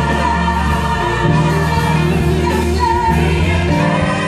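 Live gospel vocal group of men and women singing together into microphones, amplified over a PA, over a strong, steady bass.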